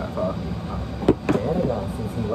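People's voices talking, with one sharp click about a second in, over a steady low room hum.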